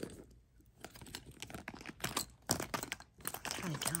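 Irregular rustling and light clicks of small cosmetic and toiletry items being handled and put back into a handbag.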